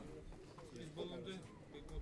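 Low, indistinct voices of people talking quietly, with a few short high tones about a second in.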